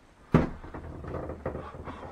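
A sharp crack about a third of a second in, which the climber puts down to his own foot cracking. It is followed by a drawn-out creaking as weight goes onto the steps of an old wooden staircase.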